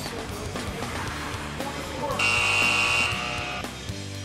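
Background music, with a steady, shrill high tone held for about a second and a half past the middle and then cut off.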